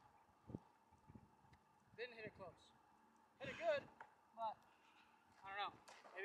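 A man's voice in several short exclamations, frustrated at a poor golf shot, with a single dull thump about half a second in.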